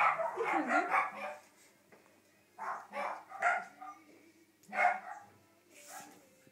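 Shelties barking and yapping: a rapid run of yaps in the first second or so, then three short barks around the middle and one more a little before the end.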